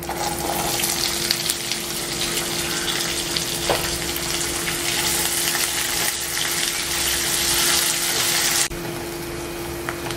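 Chopped onions sizzling in hot oil in a nonstick pan as they are tipped in and stirred with a spatula. The sizzle eases a little near the end.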